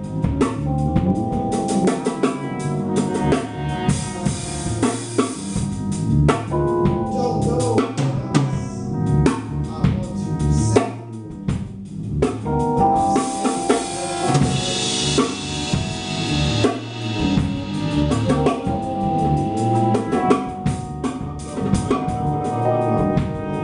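Small jazz group playing a tune, the drum kit to the fore with bass drum and snare hits under sustained horn and keyboard lines; a wash of cymbals swells about two-thirds of the way through.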